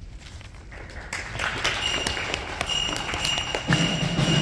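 Audience applauding, the clapping rising about a second in as the band's last ringing notes fade. A low held note comes in near the end.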